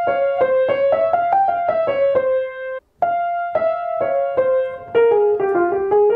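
Grand piano playing a single-note bebop-style melodic line in F minor, in quick separate notes. It comes as two phrases with a brief break about three seconds in. The second phrase falls in pitch and then climbs again near the end.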